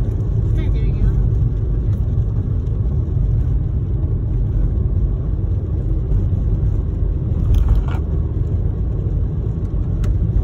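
Steady low rumble of a car driving, heard from inside the cabin, its tyres running on wet asphalt.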